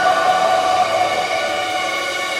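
Rock band playing live: a loud, sustained wall of droning guitar tones with no clear drum beat standing out.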